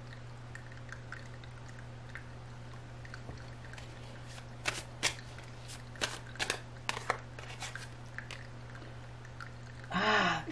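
Tarot deck handled and shuffled by hand: a run of short, crisp card flicks and taps in the middle, over a steady low hum.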